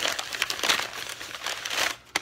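Wrapping paper crumpling and crinkling as a wrapped item is unwrapped by hand, dying away near the end.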